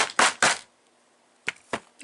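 Short, sharp metal knocks from a screwdriver being tapped to drive a stuck part out of a disassembled RC car engine. Three quick knocks come in the first half second, then two more near the end.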